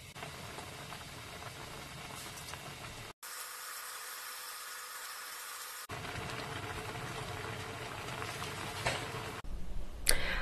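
Kimchi stew simmering and bubbling in a frying pan, with faint scrapes and clicks of a wooden spatula stirring in the first few seconds. The sound cuts off sharply about three seconds in and returns as a thinner hiss, then a steady bubbling again from about six seconds.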